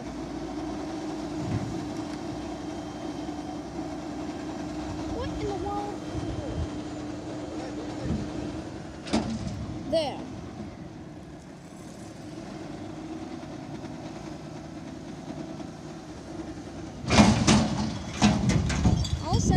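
Autocar front-loader garbage truck with a Heil Durapack Python body running, its engine and hydraulics droning steadily as it works a dumpster. Near the end come a burst of loud knocks and bangs as the container is raised over the cab and dumped.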